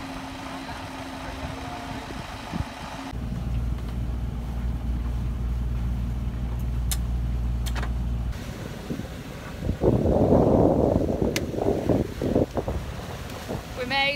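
A yacht's engine running with a steady low hum for several seconds, then gusts of wind rushing over the microphone.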